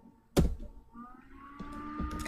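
A single sharp keystroke on a computer keyboard about a third of a second in: the Enter key pressed to run a typed terminal command.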